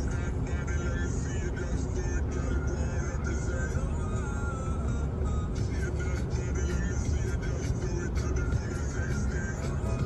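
Car driving along a highway heard from inside the cabin: a steady low road and engine rumble throughout, with background music over it.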